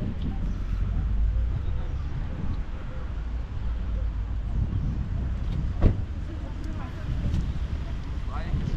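Steady low rumble of wind buffeting the microphone, with one sharp knock about six seconds in.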